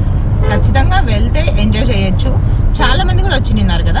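A woman talking over the steady low rumble of a moving car, heard from inside the cabin.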